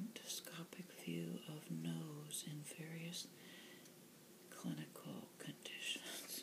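A woman speaking softly, close to the microphone, in short whispery phrases, with light paper flicks and rustles from the pages of a glossy folded booklet being turned.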